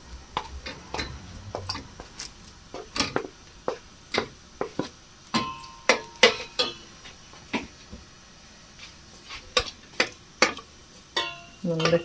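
Wooden spoon knocking and scraping against a stainless steel pot as raw beef chunks are turned in oil, in irregular taps and clicks, with a brief ringing tone about halfway.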